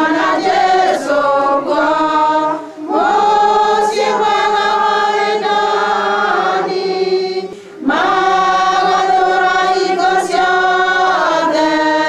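A group of schoolgirls singing a hymn together into a microphone, in long held phrases with two short breaks for breath, about three and eight seconds in.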